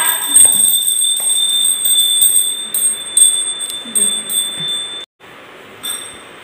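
Puja hand bell rung continuously during aarti: a steady high ringing with repeated strikes, which cuts off abruptly about five seconds in.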